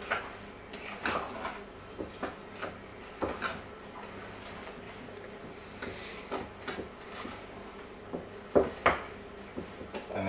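Wooden spoon stirring stiff cookie dough in a glass mixing bowl, knocking and scraping against the glass in irregular clicks, with two louder knocks shortly before the end.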